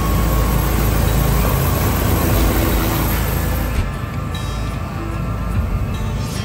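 Steady, loud low rumble of a helicopter running on the ground, heard from inside its cabin, with music playing over it.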